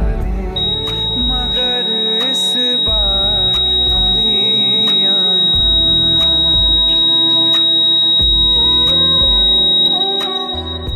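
Instrumental music without vocals: a wavering melody over a low, pulsing beat. A thin, steady high-pitched tone enters about half a second in and holds to the end.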